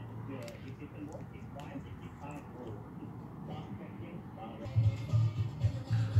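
Background radio or stereo playing faintly, a voice over music, with a low bass beat coming in loudly near the end.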